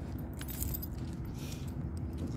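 Light metallic jingling and clinking, a few brief bursts, over a steady low rumble.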